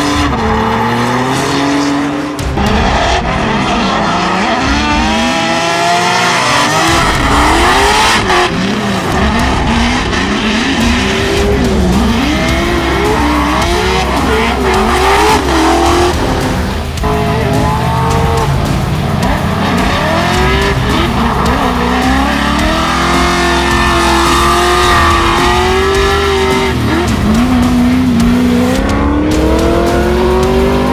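Drift cars' engines revving hard, pitch rising and falling over and over, with tyres squealing as the cars slide sideways.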